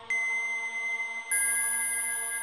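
Synthesized electronic tones of an opening theme: a bright, steady beep-like tone starts suddenly and slowly fades, then steps down to a lower pitch a little over a second in, over a faint low hum.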